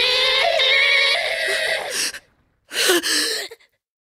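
An eerie, wavering wail of several voice-like tones warbling together for about two seconds, cut off abruptly. After a short silence comes one brief loud burst, then silence.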